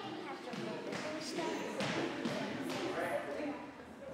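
Indistinct chatter of several children, mixed with footsteps and light thumps on the studio floor as they run and shuffle into a line.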